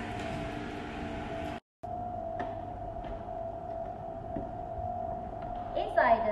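A steady, high, even hum, cut by a brief silent gap about a second and a half in, with a couple of faint clicks as the plastic front cover of a touchless soap dispenser is opened.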